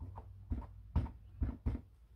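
An ink pad tapped several times onto a clear stamp mounted on an acrylic block to ink it: about five soft, dull taps spread over two seconds.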